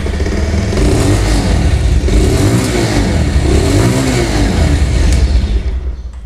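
Bajaj Pulsar 180's single-cylinder 178.6cc engine heard through its exhaust, running and revved in repeated blips so that its pitch rises and falls several times. The exhaust note is refined and bassy.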